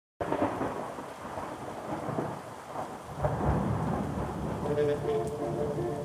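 Recorded thunderstorm, with rain and rolling thunder, opening a rock track. It starts abruptly out of silence, and sustained musical tones come in over it about four and a half seconds in.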